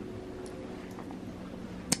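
Countertop toaster oven running with a steady low hum while a pizza bakes inside. There are a couple of faint clicks, and a sharper click near the end.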